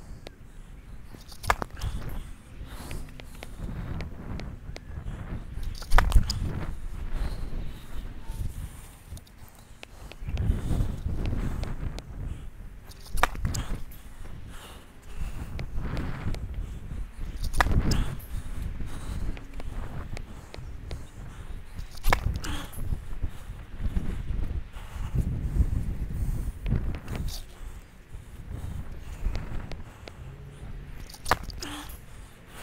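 Tennis serves struck one after another, a sharp crack of racket on ball about every four to five seconds, with lighter ball bounces between. Low, gusting wind rumble on the microphone runs underneath.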